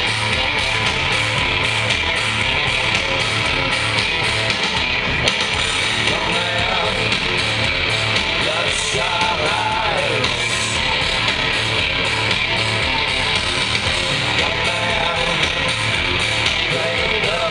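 Live rock band playing loudly: electric guitars, bass and drums over a steady beat. Recorded from within the audience on a handheld camera.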